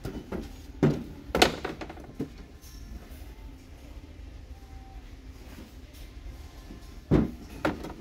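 Wooden wall signs and canvas boards knocking against one another as they are flipped through and lifted off a shelf. There are a few sharp clacks, two close together about a second in and two more near the end.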